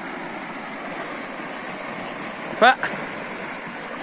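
A muddy, fast-flowing canal of running water, giving a steady rushing noise.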